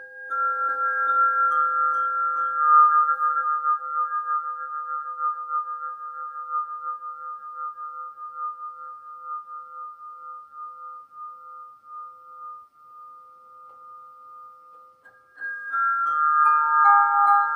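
Svaram nine-bar swinging chime (flow chime): a few of its metal bars are struck with a soft mallet near the start, and their clear notes ring on together with a pulsing waver as the bars swing, fading slowly. Fresh bars are struck about a second before the end.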